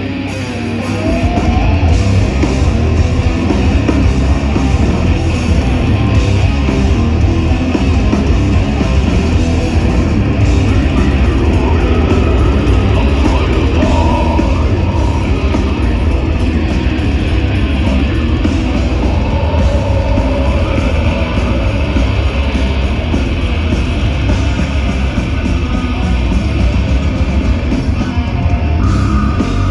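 Death metal band playing live through an open-air stage PA, heard from inside the crowd: loud distorted electric guitars over a heavy low end. The full band comes in about a second in, after a quieter guitar passage.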